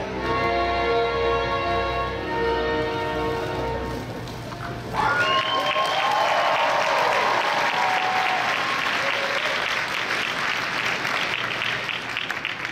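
Recorded music with a bass line playing over the hall's speakers, breaking off about five seconds in; an audience then applauds for the rest.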